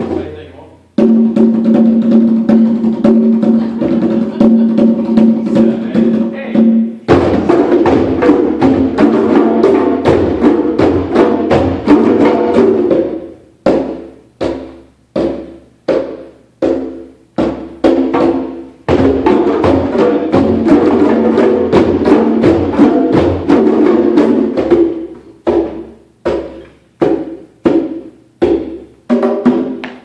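Group of hand drums, congas and djembes, playing a common rhythm with solo turns. Stretches of dense, busy drumming alternate with stretches of single, evenly spaced strokes a bit under two a second.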